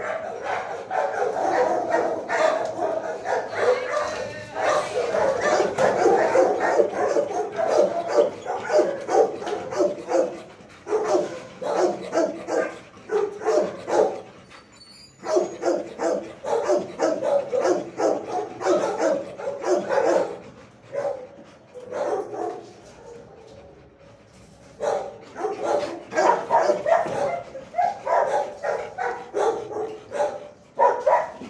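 Shelter dogs barking in quick, overlapping runs of barks, easing off briefly about halfway through and again for a few seconds past the two-thirds mark before picking up.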